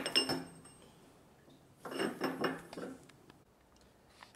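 Steel hammer parts clinking against a steel workbench: a ringing clink at the start, then a short run of lighter clinks about two seconds in.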